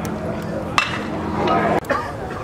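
Spectators' voices chattering at a ballpark, over a steady low hum that stops near the end. A sharp pop a little under a second in fits a pitched baseball landing in the catcher's mitt, and another sharp click follows near the end.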